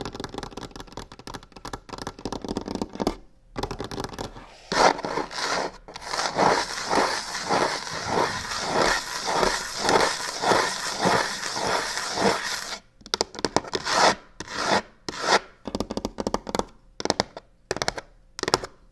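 Long fingernails scratching fast on a textured box: a few seconds of quick tapping and scratching, then a long run of even back-and-forth rubbing strokes, about two to three a second, breaking up into short quick bursts with pauses near the end.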